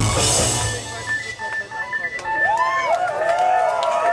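A live rock band's song ends: the full band with drums and bass stops about a second in. The crowd then cheers with rising-and-falling whoops and scattered claps.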